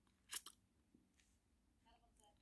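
Near silence, broken about a third of a second in by a quick cluster of two or three faint clicks.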